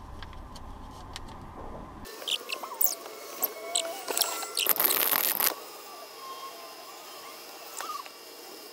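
A car driving slowly past close by, with squeaks and clicks and a loud rush of noise as it goes by about five seconds in. A steady low hum stops abruptly about two seconds in.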